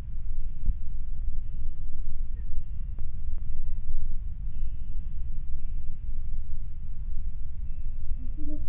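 Steady low rumble of room noise, with a few faint short tones above it.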